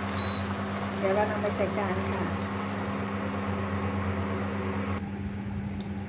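Steady electrical hum of an induction cooktop, with one short high beep just after the start, like the hob's control panel being pressed. A brief bit of a woman's voice comes in about a second in.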